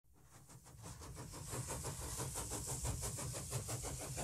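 Steam locomotive chuffing at a quick, even beat, fading in from silence and growing steadily louder.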